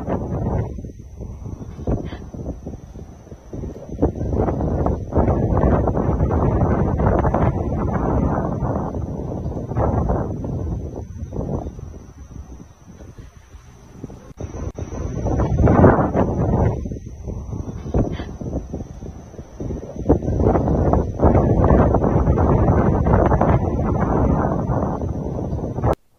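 Wind buffeting a phone's microphone: a loud rushing noise that swells and drops in gusts, with a thin steady high tone behind it.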